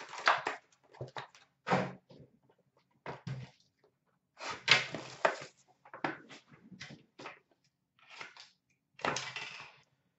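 Cardboard card boxes and paper pack wrappers being handled and opened, a run of short, irregular rustling and scraping noises.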